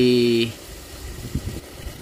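A man's drawn-out spoken syllable that ends about half a second in, followed by faint, even outdoor background noise with a few small ticks.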